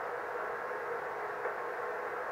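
Bitx40 40-metre ho-built receiver's speaker giving a steady, muffled hiss of band noise with a faint steady whistle in it, the sound of the receiver tuned to an empty frequency.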